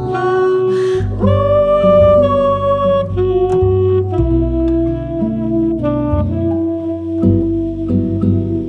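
Small jazz ensemble playing: a saxophone holds long melody notes that step from pitch to pitch about once a second, over fingerpicked acoustic guitar and plucked double bass.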